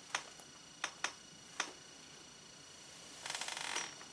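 Marker pen on a whiteboard: a few sharp taps in the first two seconds, then a short scratchy writing stroke near the end.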